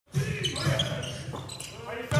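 Basketball being dribbled on a hardwood court, with short high sneaker squeaks and voices in the gym.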